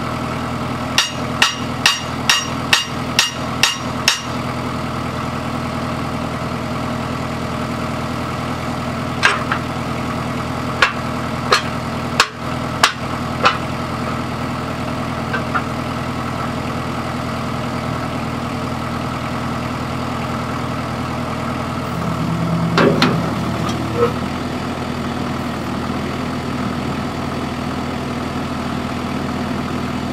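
Sledgehammer striking the end of a cultipacker's steel axle to shift it: a quick run of about eight ringing metal blows in the first few seconds, then a few single blows about ten to thirteen seconds in. A little past twenty seconds comes a short scrape of the packer wheels being slid along the axle, over a steady engine idling hum throughout.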